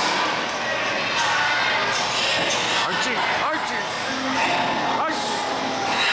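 Thuds of wrestlers landing on the boards of a wrestling ring, a few sharp hits, over the steady chatter and shouts of a crowd in a large echoing hall.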